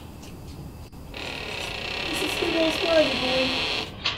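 A woman's voice calling out, starting about a second in, over a steady high hiss.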